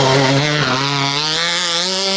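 Rally car engine revving hard on a dirt stage. Its note drops sharply at the start, then climbs steadily as the car accelerates away.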